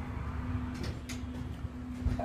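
Faint rustling and a few light clicks of glued cardstock being handled, its tabs pushed into a paper ring, about a second in, over a steady low hum.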